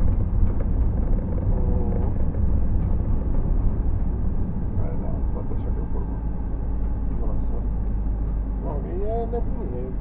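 Steady low road and engine rumble inside a moving car's cabin, with faint talking in places and a voice near the end.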